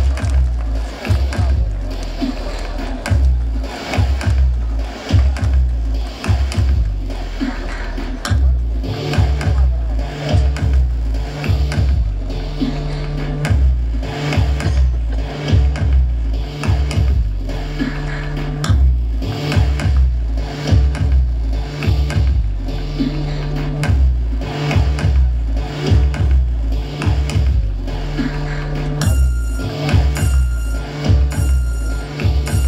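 Live band playing an instrumental intro with a heavy, pulsing bass beat; a repeating low riff joins about nine seconds in.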